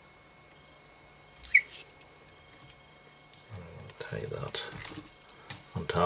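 Quiet room tone broken by one short, sharp squeak about a second and a half in; from about three and a half seconds a man's voice talks low.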